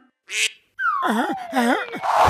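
Cartoon duck voice quacking several times in quick succession, with a long tone sliding steadily downward under the quacks. A brief hiss comes just before the quacks start.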